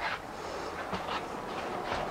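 Footsteps along a school bus aisle floor, a few soft, uneven knocks over a steady low rumble and rattle inside the bus body.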